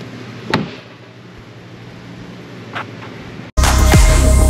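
A sharp knock about half a second in and a fainter click near three seconds, from the golf cart's rear seat being handled, over a steady low hum. Loud electronic music cuts in suddenly near the end.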